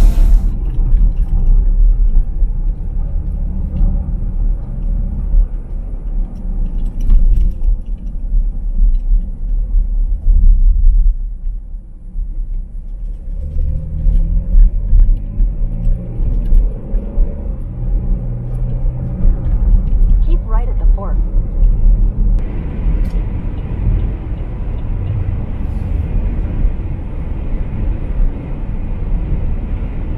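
Car interior road noise while driving: a steady low rumble from the tyres and the moving car. About two-thirds of the way through, a brighter hiss joins it.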